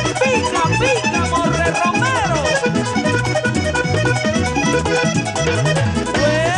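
Button accordion playing the lead over a Latin dance band in a salsa style, with a steady, repeating bass line and percussion.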